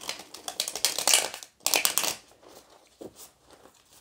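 A deck of tarot cards being shuffled by hand, with a rapid rattle of card edges in two bursts over the first two seconds, then a few lighter flicks.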